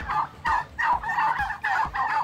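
Domestic turkeys gobbling: a run of quick, warbling gobbles repeating several times a second.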